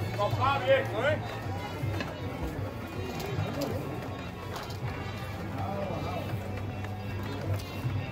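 Shuffling footsteps of a team of float bearers walking in step on cobbles under a wooden practice frame, heard beneath music and a man's voice.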